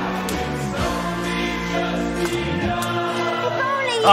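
A group of voices singing together over a band, with long held notes.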